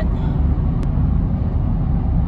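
Steady low rumble of road and engine noise inside a car's cabin, heard while cruising on a freeway.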